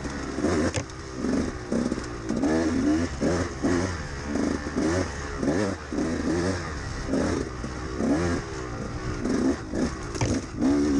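2013 KTM 200XC-W 200cc two-stroke single-cylinder dirt bike engine revving up and down over and over as the rider blips and rolls the throttle, its pitch rising and falling about once a second.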